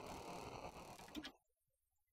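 Faint intro sound effect: a static-like hiss with a few clicks, which cuts off suddenly about a second and a half in.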